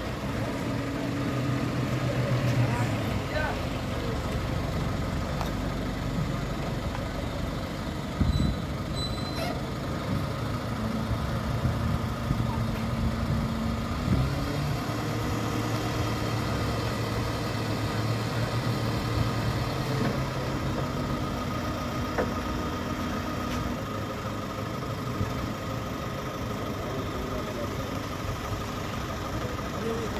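A truck engine idling steadily, with people talking in the background. A couple of sharp knocks come about eight and fourteen seconds in.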